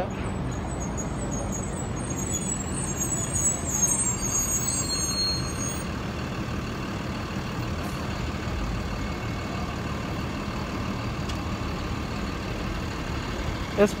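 Steady city street traffic, with a heavy vehicle such as a truck or bus going by; the noise swells a little about four seconds in, and a thin high whine sounds over it in the first few seconds.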